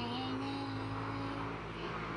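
A small boy's voice holding one long sung note that settles after a short slide down and stops about a second and a half in, over a steady low background hum.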